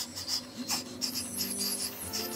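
Breathy blowing through pursed lips: attempts at whistling that give mostly a rush of air with hardly any whistle tone, the sign of not managing to whistle.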